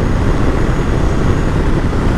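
Steady riding noise from a Ducati Multistrada V2S cruising at about 60 in sixth gear: wind rush mixed with the drone of its 937 cc V-twin, loud and unbroken.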